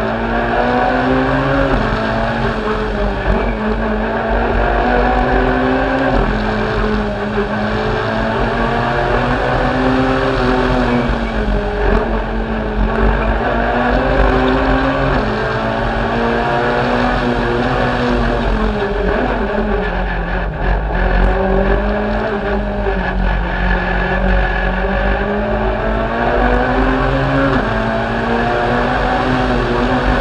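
Citroën C2 R2 Max rally car's 1.6-litre four-cylinder engine, heard from inside the cabin, driven hard along a stage: the engine note climbs and drops again and again as it accelerates and shifts, with a deeper drop about twenty seconds in as it slows before pulling up again.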